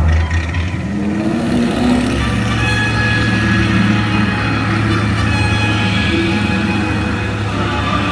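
Water-show soundtrack over large outdoor speakers: a steady low, engine-like rumble under sustained held notes.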